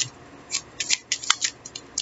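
A tarot deck shuffled in the hands: a quick run of crisp card snaps and rustles, densest about halfway through.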